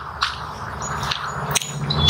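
Low, steady engine rumble, the Harley-Davidson motorcycle running a little way off, with a few faint clicks over it.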